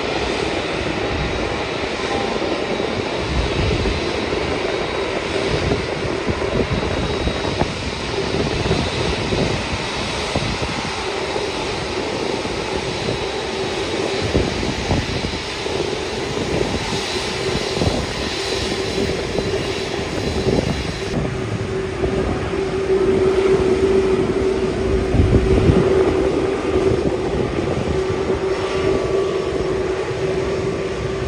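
Airbus A380 jet engines running at low taxi power: a steady rumble with a droning hum that grows louder in the second half.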